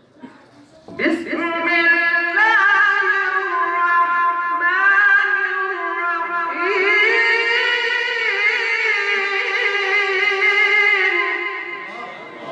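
A qari's melodic Quran recitation in the husn-e-qirat style over a microphone and loudspeakers: one high male voice holding long, wavering, ornamented notes. It starts about a second in and breaks twice briefly between phrases.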